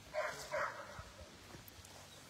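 A dog barking twice, faint, in short quick barks.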